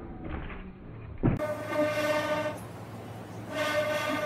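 A thump about a second in, then a steady, pitched horn-like tone held for about a second, sounded twice.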